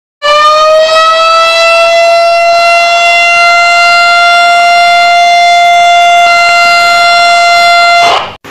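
A loud siren-like wail, a single held tone rich in overtones, that starts about a quarter second in, rises slightly in pitch over the first two seconds, then holds steady and cuts off abruptly.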